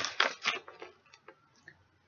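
Plastic parts of a rechargeable water-bottle dispenser pump being handled: a quick run of clicks and taps in the first second, then a few faint scattered ticks.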